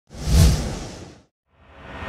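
Intro whoosh sound effect with a deep boom underneath: it swells fast, peaks within the first half-second and fades out by just over a second. After a brief silence a second whoosh starts to swell near the end.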